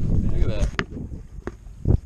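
Wind buffeting the microphone as a low rumble, with a voice trailing off in the first part and a few sharp knocks, the loudest just before the end.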